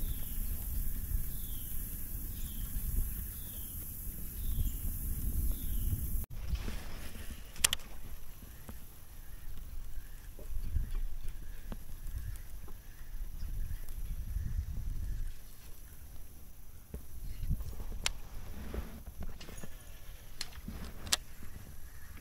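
Wind buffeting the microphone with a low rumble, with water moving against a fishing kayak's hull and a few sharp clicks. The sound breaks off abruptly about six seconds in and resumes.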